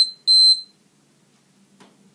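Gymboss interval timer beeping twice: two short, high, steady beeps in quick succession right at the start, marking an interval change in the workout.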